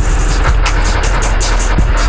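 Harsh electronic noise music: a loud, dense wall of noise over a heavy, steady bass rumble. The high hiss cuts in and out several times a second.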